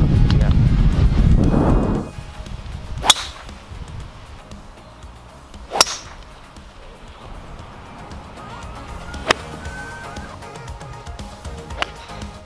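Golf clubs striking balls, the first a driver off the tee: four sharp cracks a few seconds apart, the second the loudest. A loud low rumble fills the first two seconds before them.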